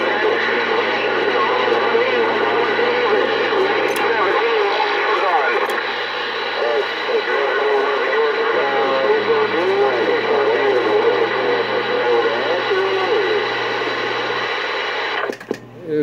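A Galaxy CB radio's speaker carrying a distant station's transmission: a garbled, unintelligible voice buried in loud static, which cuts off suddenly near the end.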